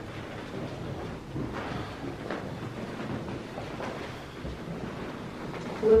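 Low, indistinct rumbling noise with a few faint knocks: handling and movement noise from a handheld camera.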